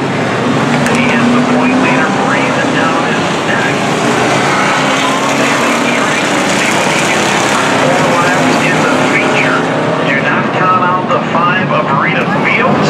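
Engines of a pack of street stock race cars running at speed around a dirt oval, a steady dense drone with a voice talking over it at times.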